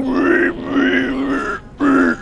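A man's voice babbling gibberish: one long drawn-out sound held at a fairly steady pitch while the vowels shift, then a short break and another syllable starting near the end.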